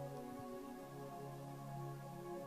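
Soft ambient background music: sustained pad chords held steadily under a pause in the sermon.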